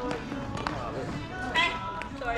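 Sharp knocks of badminton racket strikes on a shuttlecock, one at the start and another about two-thirds of a second in, followed by players' voices near the end as the rally ends.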